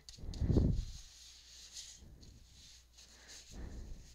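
Faint rubbing of a paper towel wiping excess acrylic paint off corrugated cardboard. A dull thump comes about half a second in, and another near the end, as the cardboard and hands bump the craft mat on the table.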